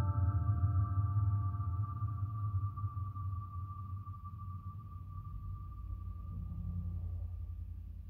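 Soundtrack ending on a deep low rumble under a few held high tones, all slowly fading out.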